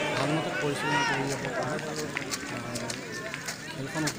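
A man talking in Assamese, with no other sound standing out.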